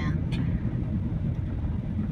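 Car driving along a road, heard from inside the cabin: a steady low rumble of engine and tyre noise.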